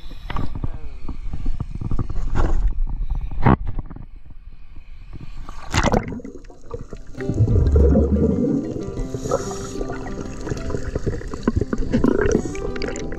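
Seawater sloshing and splashing against an action camera at the surface, with wind on the microphone. About seven seconds in, as the camera goes underwater, background music with sustained notes begins.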